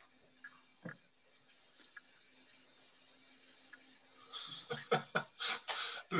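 Faint room tone with a soft click about a second in, then a man's laughter starting about four seconds in, heard through a video call.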